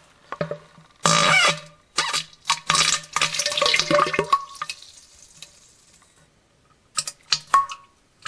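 Wet, splashy stirring and gurgling sounds with sharp clinks and clicks, coming in irregular bursts. The loudest bursts come about a second in and again from about two to four and a half seconds; near the end there are only a few clicks.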